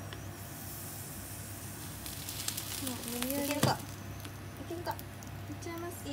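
Beaten egg sizzling in a hot rectangular tamagoyaki pan as the omelette layer cooks, the hiss strongest about two to three seconds in. A short voice sound rises about three seconds in, followed by a single sharp knock.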